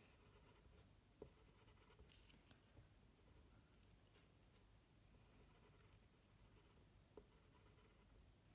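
Near silence, with a few faint, short scratches and taps of a black Polychromos coloured pencil on toothy mixed-media paper as small marks are drawn.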